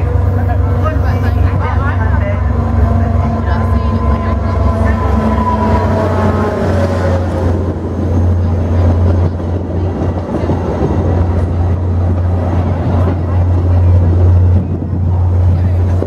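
A VIA Rail passenger train arrives. The diesel locomotive's engine runs with a steady low rumble and drops in pitch as it passes, about five seconds in. The coaches then roll by on the rails as the train slows.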